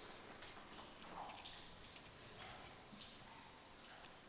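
A single sharp click about half a second in, then faint scattered ticks and small knocks over a low hiss.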